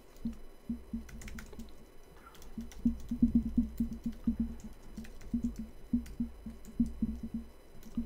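Typing on a computer keyboard: a run of quick, uneven keystrokes as a shell command is entered, busiest from about three seconds in.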